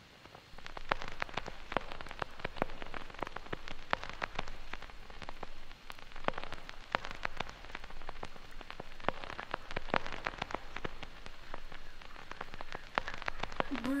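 Intro of a vinyl record playing on a turntable: a dense, irregular crackling patter like rain falling on a surface, over a steady low hum. A voice comes in right at the end.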